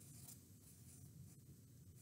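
Faint scratching of a felt-tip marker writing on a sheet of paper.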